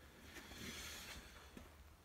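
Near silence: room tone, with a faint soft rise in noise lasting about a second.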